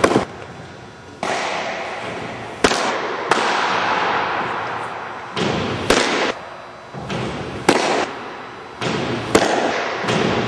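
Baseballs popping into a catcher's mitt: about five sharp smacks a couple of seconds apart, each ringing off the gym walls. A rushing background noise swells suddenly and fades between them.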